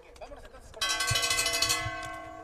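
Boxing ring bell struck about a second in, ringing with a steady metallic tone that begins to fade near the end, signalling the start of the decision announcement.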